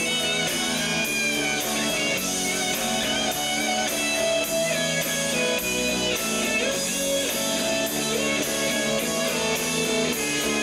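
Live rock band playing an instrumental passage with no vocals, electric guitar to the fore over a steady beat.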